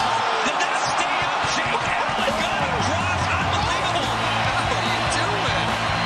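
Ice hockey game sound: steady arena crowd noise with sharp clacks of sticks and puck on the ice. About two and a half seconds in, a low, steady music bed comes in underneath.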